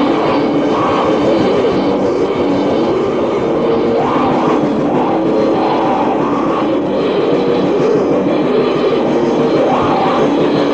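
Lo-fi raw black metal played from a cassette demo: a dense, unbroken wall of distorted guitar and rapid drumming. The sound is dull, with no high end.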